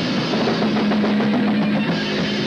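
Live rock band playing loud, with the drum kit to the fore and a low note held from about half a second in until near the end.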